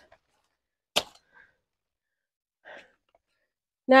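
A single sharp snap about a second in, as a banana heart's stalk is broken off the plant, followed by faint, brief rustles of banana leaves.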